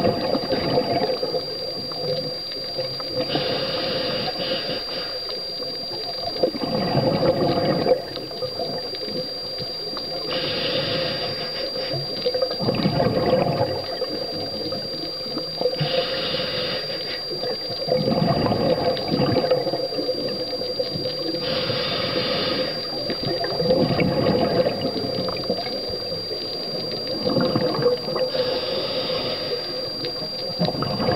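A scuba diver breathing through a regulator underwater: a hiss on each inhale, then a gurgling rush of exhaled bubbles, about one breath every six seconds. A thin steady high tone sits underneath.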